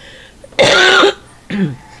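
A person coughing with a bad cold: one loud, harsh cough about half a second in, then a brief shorter cough near the end.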